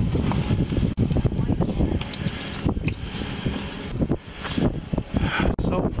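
Wind buffeting a body-worn camera's microphone as an uneven low rumble, with short knocks and rustles from the camera and the officer's clothing moving.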